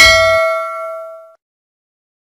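Notification-bell ding sound effect of a subscribe-button animation: a single bright bell strike that rings and fades away over about a second and a half.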